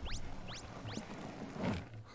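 Cartoon sound effects from an animated episode's soundtrack: three quick rising whistle-like zips in the first second, over faint background music.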